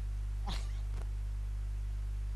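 Steady low electrical mains hum, with a brief squeak-like glide about half a second in and a fainter one at about one second.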